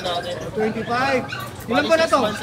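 Puppy whimpering and yipping in a few short, rising calls.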